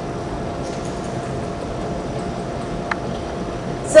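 Steady mechanical hum and hiss of indoor pool room machinery, with a thin steady tone and one faint click about three seconds in.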